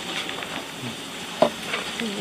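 Pink champagne fizzing in a plastic cup just after pouring, a steady hiss, with a short knock about one and a half seconds in.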